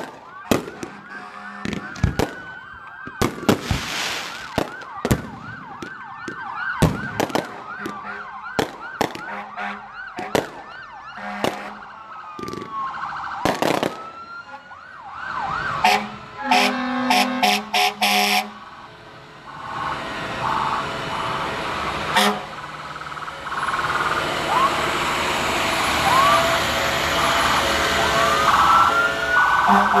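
Emergency vehicle sirens wailing and yelping, several at once, with fireworks going off in many sharp bangs through the first two-thirds. After the bangs stop, the sirens carry on under a steadily louder rushing noise.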